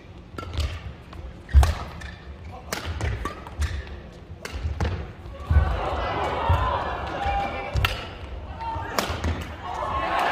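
Badminton singles rally: sharp racket strikes on the shuttlecock roughly once a second, with players' footfalls thudding on the court. Spectator voices rise from about halfway in.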